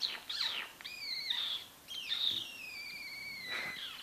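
Savannah cat chirping: a few short high-pitched chirps, then one long call that slides slowly down in pitch until just before the end.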